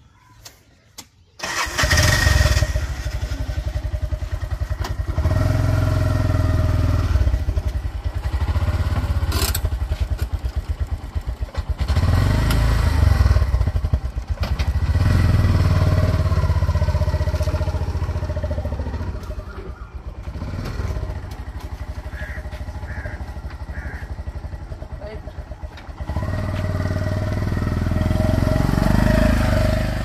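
Auto-rickshaw (three-wheeler) engine starting suddenly about a second and a half in, then running as the vehicle drives off. The engine note rises and falls, eases off for a stretch past the middle and gets louder again near the end.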